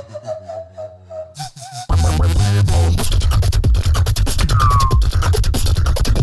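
Solo beatboxing in an electronic, dubstep-like style: first a quieter held tone over a low hum, then, about two seconds in, a sudden loud beat of heavy bass and rapid clicks and scratch-like sounds, with a short falling whistle-like tone near the end.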